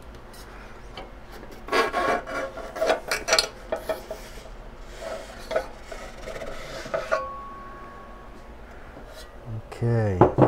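The inner chassis of a Ugreen DXP4800 Plus NAS sliding out of its outer case, with scraping and rubbing in a run of bursts over about five seconds and a brief squeal at the end of the slide. A low thud comes near the end, as the freed frame is set down.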